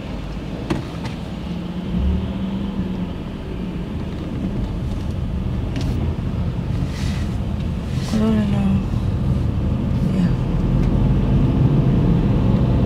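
A manual car's engine and road noise heard inside the cabin as the car pulls away and gathers speed, growing gradually louder.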